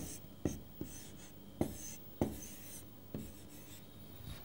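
Marker pen writing on a board: short scratchy strokes broken by about six light taps as the tip meets the surface.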